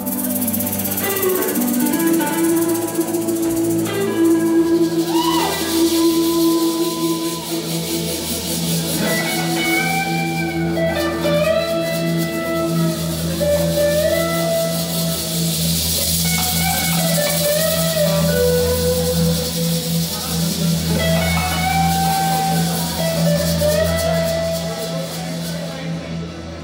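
A live band playing an instrumental passage: electric guitar, electric bass, drum kit and hand percussion, with a melody in held notes that step up and down.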